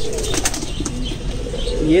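A pigeon flapping its wings in quick strokes while held in a hand, with pigeons cooing.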